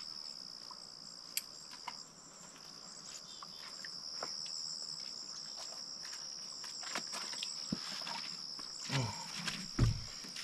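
Steady, high-pitched chorus of insects trilling without a break, with a few small clicks and some soft thumps near the end.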